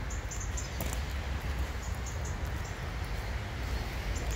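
Outdoor ambience: small birds chirping in short high notes over a gusting low rumble of wind on the microphone.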